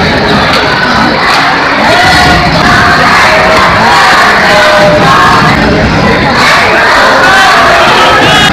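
Hockey arena crowd: a loud, steady din of many voices shouting and cheering at once.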